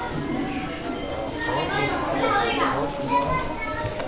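Many children's voices chattering and calling out at once, overlapping.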